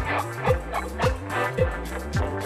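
Dance-beat band music: a deep kick drum that drops in pitch on every beat, a little under twice a second, over a sustained bass line and sharp percussion hits, with electric guitar.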